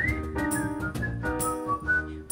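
Acoustic trio playing: Nord keyboard chords, double bass and cajon strikes, with a high whistled tune that swoops up at the start and then steps down note by note.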